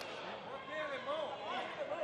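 Faint, indistinct voices calling out in a large arena hall, over a low steady background.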